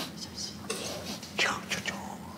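Soft whispering, breathy and murmured, close up.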